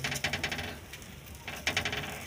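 A hand patting chuni roti dough flat on an iron tawa: two quick runs of soft slapping taps, one at the start and one about one and a half seconds in.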